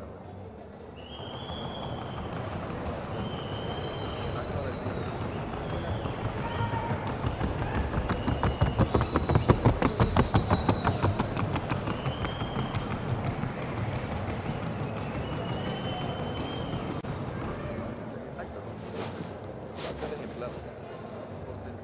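Hooves of a Colombian trocha mare beating on the hard track at trocha gait: a fast, even drumming that builds to its loudest in the middle and fades away after a few seconds.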